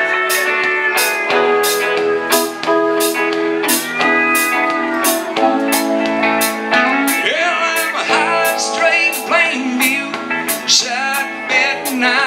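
Live country band playing a song's instrumental opening: electric guitars with bent notes over a steady drum beat of about two strokes a second.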